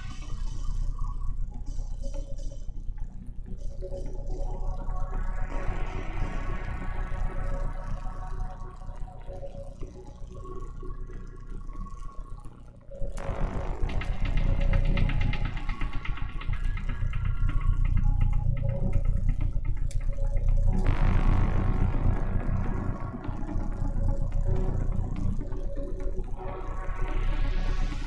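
Electronic dance music mixed live on a DJ controller. In the first half the highs sweep up and back down while the bass is thinned out. About halfway through the full track with heavy bass comes in suddenly, and near the end the highs sweep up again.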